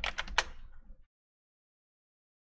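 A few quick computer keyboard keystrokes in the first half second, then the sound cuts out to dead silence about a second in.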